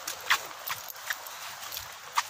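Footsteps on a forest path: a few irregular steps and knocks, the loudest about a third of a second in.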